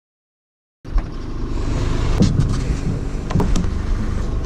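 A vehicle driving: a steady low rumble of engine and road that starts suddenly just under a second in, with a few short knocks or rattles over it.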